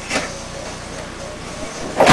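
Room noise: a steady low hum with faint, indistinct voices.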